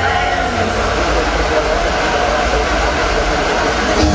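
A loud, noisy rumbling passage in a dance backing track over the hall's speakers, with a steady bass underneath and no clear melody. Sung music comes back right after it.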